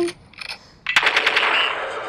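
A rapid burst of automatic gunfire from a rifle-style combat-game gun, starting about a second in and keeping on at a fast, even rate.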